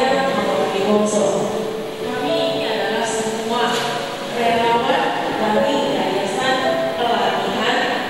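A woman singing into a microphone through a PA over background music, in a slow melody with held notes.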